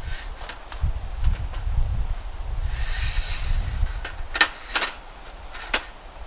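Aluminum roll-up camp table top being folded and stacked by hand: the metal slats rattle and scrape, then knock together in a few sharp clicks near the end.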